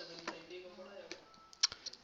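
A marker writing and tapping on a whiteboard, with a few sharp clicks near the end. Soft muttering comes in the first second.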